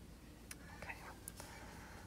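Two faint clicks of knitting needles as stitches are worked, in an otherwise quiet room.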